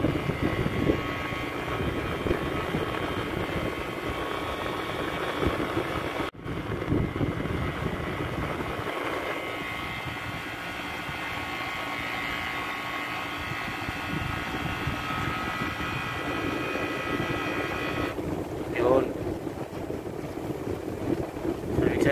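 Window-type air conditioner running, its compressor and fan giving a steady hum with a high whine. About eighteen seconds in, the whine stops abruptly: the compressor switching off as the new thermostat cuts out, a sign that the thermostat now works.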